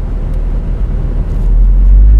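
2016 MINI John Cooper Works's turbocharged four-cylinder engine and REMUS aftermarket exhaust, heard from inside the cabin while driving. It is a low, steady drone that grows louder about a second and a half in as the car pulls harder.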